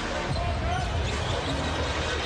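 Basketball dribbled on a hardwood court over the steady noise of an arena crowd.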